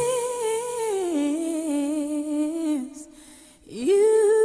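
Recorded song with a solo voice humming, unaccompanied: a slide up into a long held note with vibrato, a step down to a lower held note, a fade and a brief near-silent break about three and a half seconds in, then another slide up.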